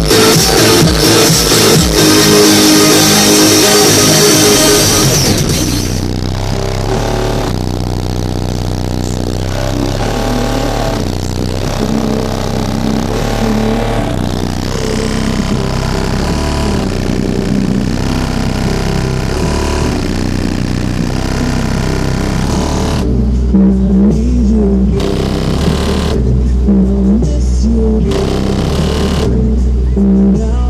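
Music played at high volume through a Sundown Audio car audio system built into a Volkswagen Golf, with heavy deep bass. About six seconds in the bright, busy top end drops away and the track runs on bass-heavy; in the last several seconds the deep bass hits are strongest while the highs cut in and out.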